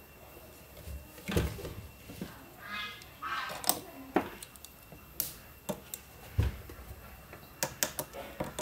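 Irregular handling clicks and knocks as a metal-cased inverter is set down on the bench and alligator-clip leads are picked up and clipped onto a battery terminal, with a duller thud about six and a half seconds in.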